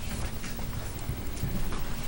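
Soft irregular thumps and faint clicks of papers and objects being handled on a meeting table, picked up through the table microphones.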